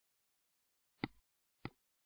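Two short, sharp computer mouse-button clicks about two-thirds of a second apart, the first about a second in.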